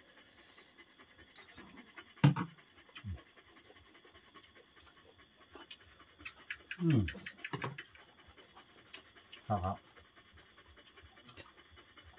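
Steady, high-pitched chirring of night insects in the background, with scattered small clicks and mouth sounds from people eating by hand. A sharp click comes about two seconds in, and a brief "mm" and a couple of spoken words come near the end.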